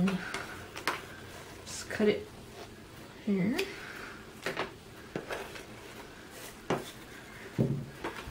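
Handling noise from green tulle being cut with scissors and wrapped round a hard black plastic board: irregular sharp clicks and knocks about once a second as the board and scissors are handled, with the soft rustle of the netting.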